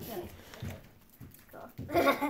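Mostly speech: a voice saying "Joy" at the start and voices again near the end, with a few soft knocks from gift items being handled in between.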